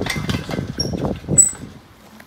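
Steel pipe gate and its sleeve latch rattling and clanking as the gate is worked open, with a run of knocks and a brief high metallic tone about a second and a half in, stopping shortly before the end.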